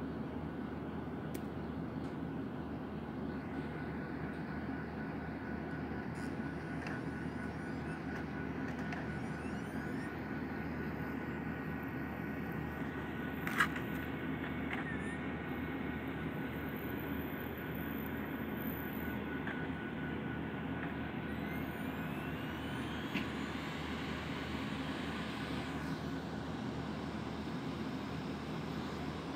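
Steady background room noise, a constant hum, with a single sharp click about halfway through.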